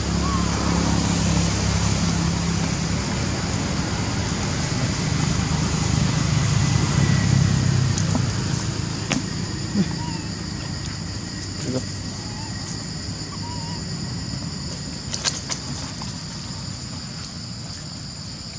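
Outdoor ambience: a low engine hum that fades after about eight seconds, under a constant high-pitched insect drone, with a few faint chirps and clicks.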